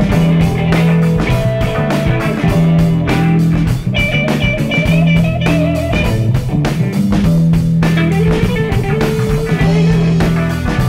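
Live instrumental blues-rock jam: two electric guitars, bass guitar and drum kit playing together over a steady drum beat. Midway through, a lead guitar holds a long wavering note.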